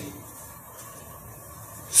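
Quiet pause between words, with only faint, steady room noise.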